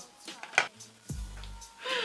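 Quiet background music, with a few faint short clicks and rustles, one sharp click about half a second in.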